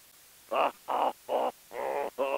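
A man's voice making short repeated hooting sounds, about four in a second and a half, beginning about half a second in.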